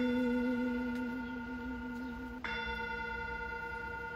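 Metal singing bowl ringing with a wavering low tone and steady higher overtones, slowly fading. About two and a half seconds in it is struck again with a wooden striker, the low tone drops away and a bright set of higher tones rings on.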